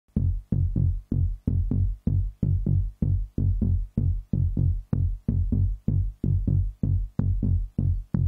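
Electronic synthesizer bass pattern: short, deep pitched pulses, about three or four a second in a steady rhythm, each starting with a click and dying away quickly.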